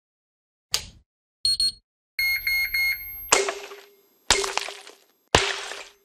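Electronic logo sting: a short swish, two quick high beeps and a run of four beeping pulses, then three sharp hits about a second apart, each fading out with a ringing tail.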